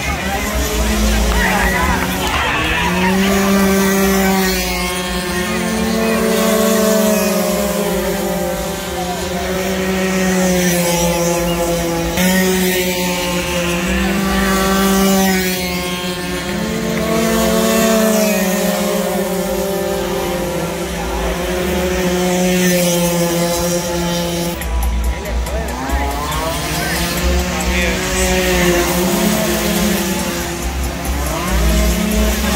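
Small 48cc racing motorcycle engines revving again and again. Each rev climbs quickly and then holds high for a couple of seconds, with crowd voices underneath.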